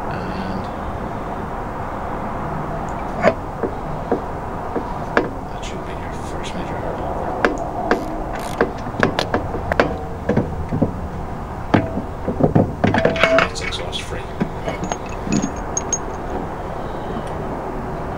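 Scattered knocks and clunks of a scooter's steel exhaust silencer being worked loose and lifted off its mounts by hand, busiest in the second half, over a steady background hum.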